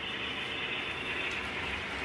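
Steady, even background noise with no distinct events: room tone between words.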